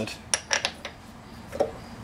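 A few light, sharp clicks and knocks, clustered in the first second, from a lawnmower's plastic rear wheel being handled and worked at its hub.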